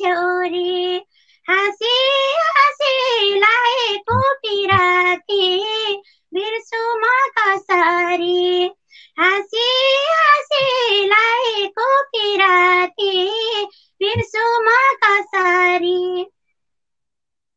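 A woman singing a Nepali dohori folk song without accompaniment, in phrases of one to three seconds with long held, wavering notes and short pauses that drop to silence.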